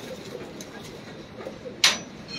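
Pigeons cooing faintly, with one short, sharp noise near the end.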